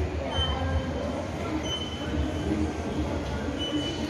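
A steady low rumble with a few brief high-pitched squeals.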